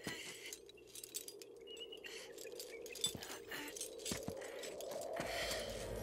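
Climbing gear clinking and hands scraping on rock: scattered faint clicks and scrapes, the sharpest about three seconds in.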